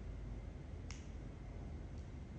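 A single short, sharp click about a second in, over a faint, steady low background rumble.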